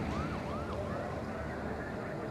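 Fire truck siren in a fast yelp, a rising sweep repeating about three times a second, fading out about halfway through, over a low rumble.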